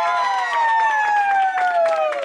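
Several high voices cheering together in one long drawn-out "yaaay" that slowly falls in pitch, with scattered clapping.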